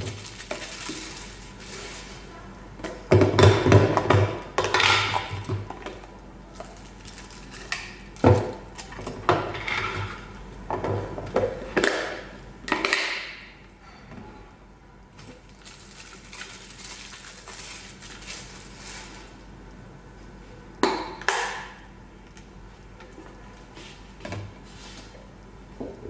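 Plastic packaging rustling and plastic storage tubs and lids knocking as they are handled and stacked one on another, in irregular bursts, loudest about three to six seconds in.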